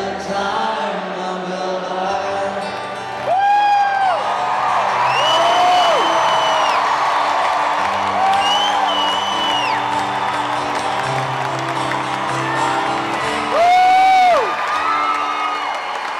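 Amplified acoustic guitar playing held chords over a cheering crowd. Several long, high-pitched whoops come from fans close by; the loudest are about four seconds in and again near the end.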